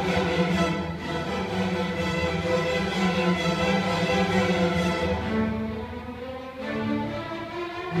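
String orchestra playing, violins and cellos bowing sustained notes. A little past the middle the sound thins and drops quieter for about a second and a half, then fills out again.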